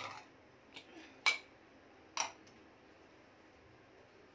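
Aluminium pressure cooker lid knocking against the cooker's rim as it is worked out of the pot: three sharp metal clinks within about a second and a half, the middle one loudest and the last ringing briefly.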